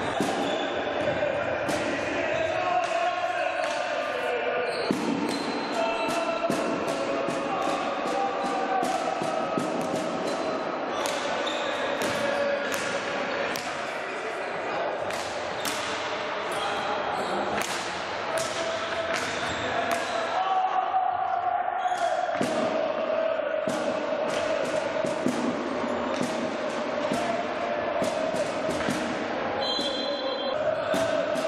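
Indoor hockey play in a sports hall: frequent sharp clacks of sticks striking the ball and the ball knocking against the side boards, over a steady layer of voices echoing in the hall.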